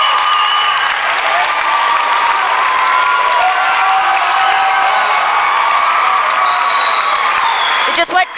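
An audience clapping and cheering in a hall, with voices calling out over the steady clapping.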